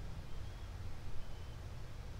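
Steady low rumble and faint hiss of background noise, with no distinct event.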